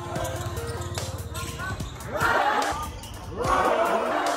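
A basketball being dribbled on the hard court floor, bouncing repeatedly, under music and voices. There are two louder bursts of noise, one about two seconds in and one near the end.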